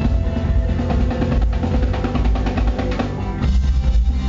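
Live rock band playing an instrumental passage, the drum kit to the fore over guitars and bass. About three and a half seconds in the music moves into a new section.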